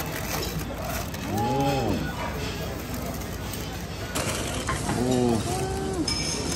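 Aluminium foil crinkling and tearing as a foil-wrapped packet is ripped open by hand.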